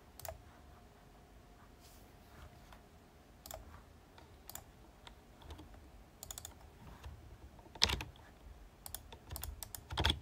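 Sparse, faint computer mouse clicks and keyboard keystrokes, with the loudest click about eight seconds in and a quick run of keystrokes near the end, as a hex colour code is copied and pasted.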